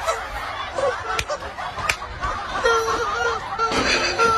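Rubber duck squeeze toys on the players' feet, squeaking as they are stepped on: a rapid string of short honking squeaks, thickest in the second half, with two sharp clicks about a second and two seconds in.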